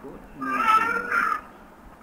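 A domestic cat meowing: one drawn-out, high-pitched call lasting about a second, starting about half a second in.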